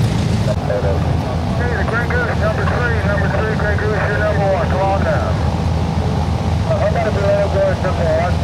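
Republic Seabee amphibians taxiing on the water, their pusher-propeller piston engines making a steady low drone, with people's voices talking over it.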